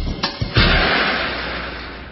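An escalator stopping abruptly. Beat-driven music cuts off, and about half a second in there is one loud clunk followed by a noisy rush that fades away as the escalator halts.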